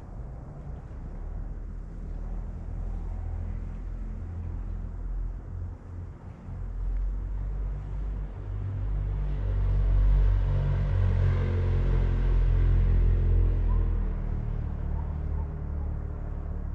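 Low engine rumble of a passing motor, swelling to its loudest about ten to thirteen seconds in and easing off near the end.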